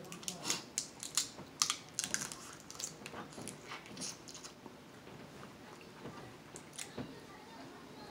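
Close-up eating of crab legs: shells cracking and snapping between the fingers and teeth, with chewing and mouth smacks. A fast run of sharp cracks fills the first half, then a few more near the end.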